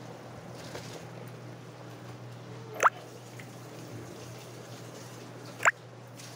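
Beef stock boiling in a pot, with two sharp liquid plops, about three and five and a half seconds in, as spoonfuls of washed rice are dropped into it.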